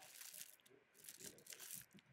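Near silence, with faint scattered rustles and clicks of beaded costume-jewelry necklaces shifting under a hand that is sorting them.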